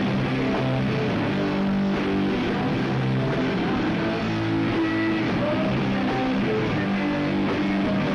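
Rock band playing live: electric guitars and drum kit playing a loud, steady song.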